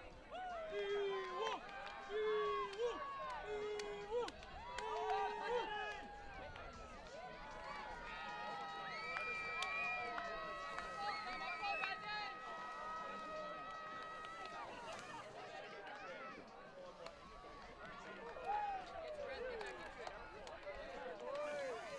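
Distant players' voices and calls on an open field, with a short call repeated about four times in the first few seconds. A steady high tone is held from about eight to fifteen seconds in.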